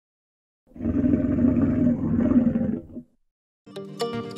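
A lion's roar sound effect: one roar lasting about two seconds, starting just under a second in.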